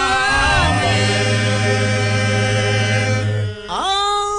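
A small group of men and a woman singing a worship song together, holding long notes, with a brief break about three and a half seconds in before the next held phrase.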